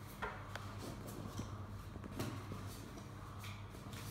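Faint scattered taps and rubbing as cardboard game cards and small pieces are handled and set down on a tabletop, over a low steady hum.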